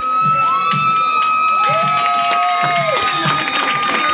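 A roomful of people cheering and whooping, with long drawn-out high cheers held for a few seconds, over a steady low beat.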